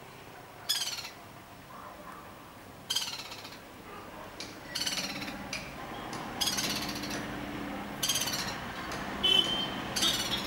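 Black-rumped flameback (lesser golden-backed woodpecker) calling: five short calls about every two seconds, each a quick run of repeated notes.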